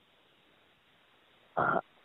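Near silence, then one short grunt-like voice sound about a second and a half in.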